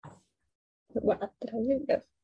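A man's voice speaking in a lecture, picking up again after a pause of under a second.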